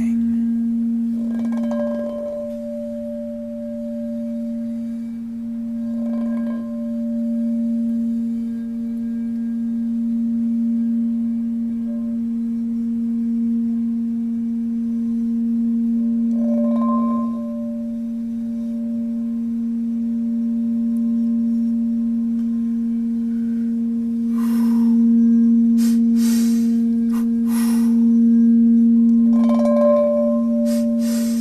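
Quartz crystal singing bowl sounding one low, steady, sustained tone with fainter higher overtones, kept going by a mallet worked around its rim. A few brief rustling noises cut through it, several in a row near the end.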